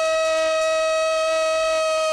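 A stage performer's voice holding one long, steady high note.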